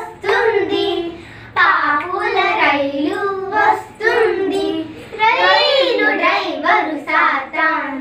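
Young girls singing a children's Christian song together, in phrases with short breaths between, with no instruments.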